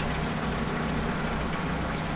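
A steady low hum with an even hiss over it, unchanging throughout, with no sudden sounds.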